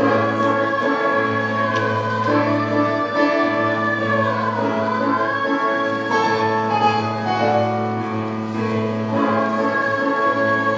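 Eighth grade choir singing with instrumental accompaniment, the voices holding long notes that slide smoothly from one pitch to the next.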